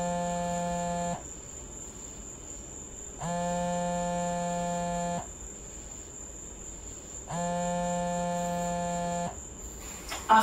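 Phone ringing unanswered: a steady, single-pitched electronic ring tone about two seconds long, repeating about every four seconds, three rings in all.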